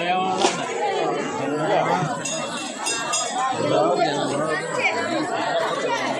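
Crowd chatter: many people talking at once, with a sharp clink about half a second in.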